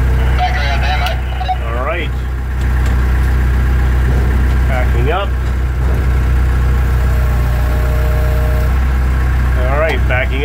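Engine of a forklift-type lifting machine idling steadily, heard from inside its cab.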